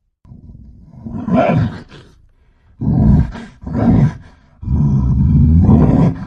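Deep, low-pitched vocal sounds in four loud bursts. The last is the longest, about a second and a half.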